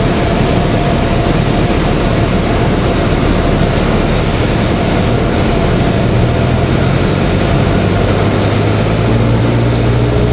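Aircraft engine and airflow noise heard inside the cockpit on final approach, a loud steady noise. About six seconds in, a low engine hum grows stronger, and near the end a clearer engine note with several pitched lines comes in.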